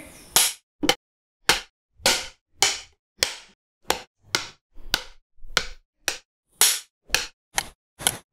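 Film clapperboard sticks snapped shut again and again: about fifteen sharp claps in quick succession, roughly two a second, with silence between each.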